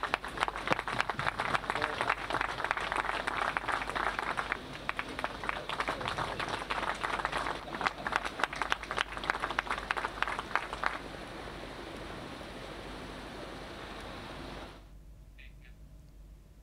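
An audience applauding, a dense patter of many hands clapping that stops about eleven seconds in. A low, steady background noise remains after it.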